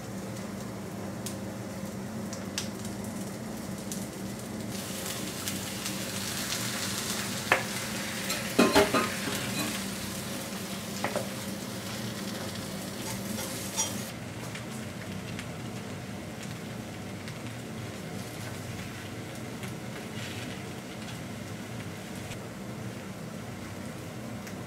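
Takoyaki batter and chopped cabbage sizzling on a hot takoyaki plate over a gas burner. A few sharp clicks of utensils against the pan or bowl come about a third of the way in, the loudest sounds here, with a couple more near the middle.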